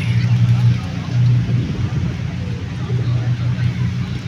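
Outdoor city ambience: a steady low rumble of road traffic, with faint voices in the background.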